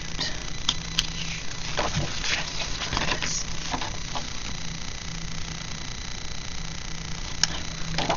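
Paper and sticker sheets being handled and shuffled over a planner: scattered short rustles and a few sharp clicks. A steady low hum runs underneath.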